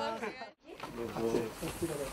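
People's voices exchanging greetings, broken by a short silent cut about half a second in, then softer talk.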